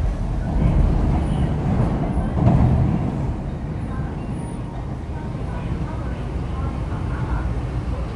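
MTR East Rail Line R-Train, a Hyundai Rotem electric multiple unit, running as heard from inside the car: a steady low rumble of wheels and running gear, a little louder in the first few seconds.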